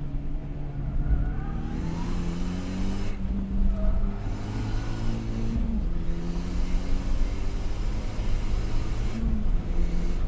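Car engine heard from inside the cabin, accelerating hard with its note climbing, broken by gear changes about three, six and nine seconds in, over steady road and wind noise.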